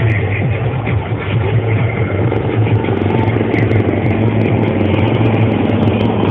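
Display helicopter flying past low overhead: a steady, loud drone of rotor and engine, with music playing over it.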